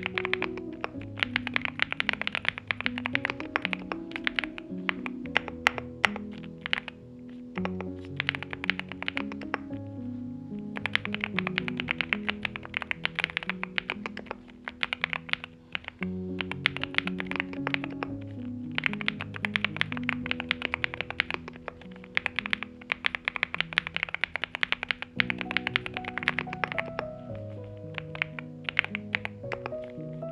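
Fast, continuous typing on a NuPhy Gem80 mechanical keyboard: NuPhy Mint switches on an FR4 plate in a silicone-sock gasket mount, with double-shot PBT Gem mSA keycaps. A dense run of keystroke clicks plays over background music with a repeating melodic phrase.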